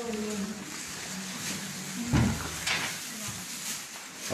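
Low voices of people moving about a small room, with one loud dull thump about two seconds in and a lighter knock just after.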